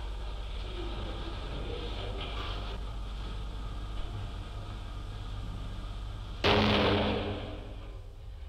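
A single shotgun shot, test-fired from a gun clamped in a booth, cracking out suddenly about six and a half seconds in and dying away over about a second. Before it there is only the steady hum and hiss of the old film soundtrack.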